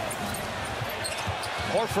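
Basketball being dribbled on a hardwood court, short thumps about three a second, over the steady murmur of a large arena crowd.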